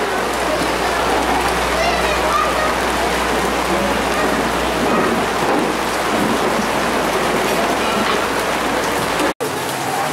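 Heavy rain pouring down, a steady dense hiss of water falling on the street, with faint voices under it. The sound cuts out abruptly for a moment near the end.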